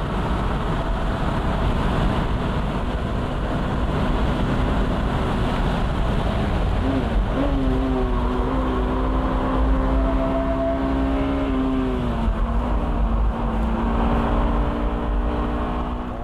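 Honda S2000 prototype's engine running hard at speed, heard from inside the open cockpit with heavy wind and road noise. About seven seconds in, the pitch rises briefly and then settles into a steady engine note, which steps slightly lower about twelve seconds in.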